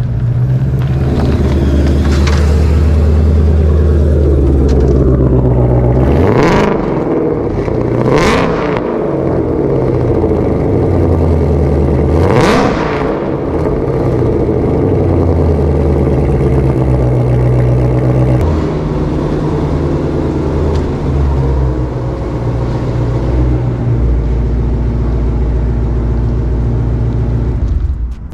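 A 2020 Shelby GT500's supercharged V8 running hard with its rear tyres spinning and smoking in a burnout, the revs surging and dropping sharply a few times in the first half.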